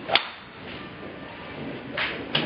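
Golf driver striking a ball off the tee: one sharp, loud crack just after the start.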